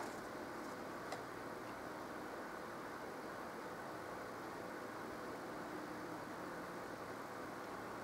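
Quiet room tone: a steady faint hiss with no clear source, broken only by one soft click about a second in.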